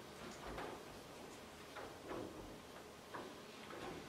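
Quiet room tone with a few faint, soft ticks and rustles.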